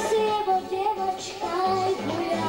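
A young girl singing a pop song into a microphone over backing music.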